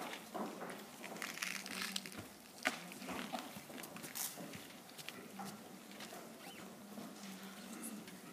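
Quiet hall ambience as people settle before a performance: scattered footsteps, rustles and faint murmured voices over a low steady hum, with a sharp click about two and a half seconds in.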